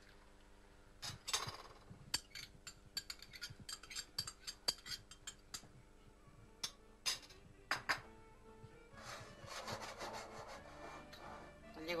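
A metal spoon clinking and scraping against a stainless steel pot as tomato sauce is stirred into browned meat: a run of sharp, irregular clicks, then a softer scraping stretch near the end.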